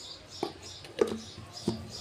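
A few light clicks and knocks from a mixer-grinder jar's plastic lid being handled and fitted onto the steel jar: three sharp taps about half a second apart. The grinder motor is not running.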